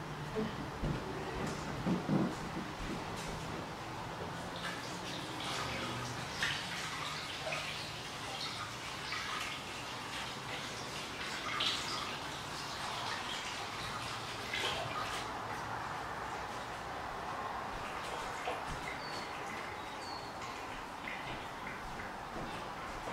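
Steady room noise with scattered soft clicks and rustles of small handling, a few louder knocks in the first few seconds, and a couple of faint high chirps near the end.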